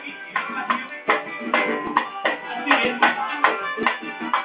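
Live samba de roda music led by drums and hand percussion, with a steady beat of sharp strikes about two to three a second.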